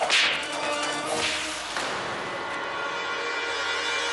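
Two sharp whip-like swish sound effects, the loudest right at the start and a weaker one about a second later, leading into a sustained dramatic music chord.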